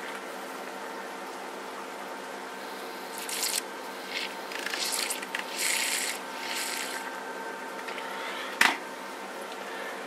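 A thin metal stirrer scraping and swirling in a small plastic cup of water, mixing in a powder, in several short bursts over a few seconds. A single sharp knock follows a little before the end.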